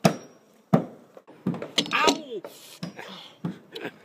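Hammer blows on wooden boardwalk timber: a few sharp knocks, the loudest just under a second in, with a person's voice in between.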